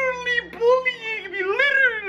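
A man's voice in a high, whiny falsetto, wavering up and down in pitch like mock whimpering or crying.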